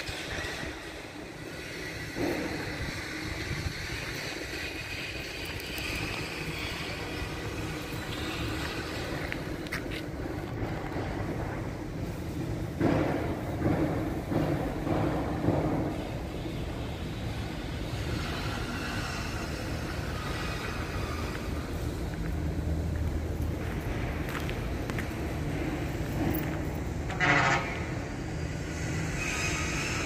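A steady vehicle rumble, swelling for a few seconds in the middle, with a short higher-pitched burst near the end.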